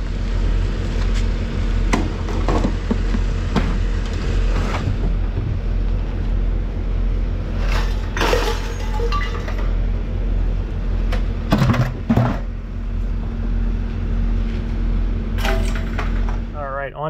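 Pieces of scrap metal thrown onto a scrap pile, landing with sharp clanks and clinks several times, over a steady low rumble and hum.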